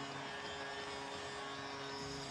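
An arena goal horn sounding a steady held chord of several tones over a cheering crowd, right after a goal.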